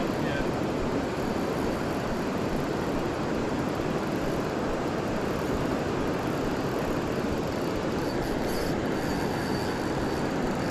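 Steady roar of rushing river water pouring out below a dam, unchanging throughout.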